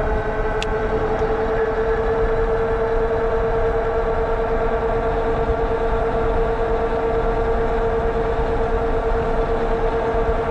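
Vitilan U7 fat-tire electric bike cruising at about 27 mph. A steady whine from the drive runs over wind on the microphone and road rumble from the tires, with one small tick about half a second in.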